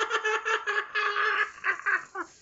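A man's high-pitched falsetto laughter, coming in rapid pulses for about a second, then held, then breaking into a couple of short falling whoops near the end.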